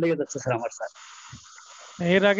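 A person speaking for under a second, then about a second of faint, steady hiss before speech resumes.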